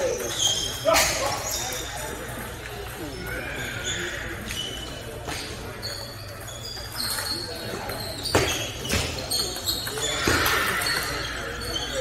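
Table tennis ball clicking off paddles and the table: a few sharp, separate knocks, two of them about half a second apart in the second half, with voices in the hall behind.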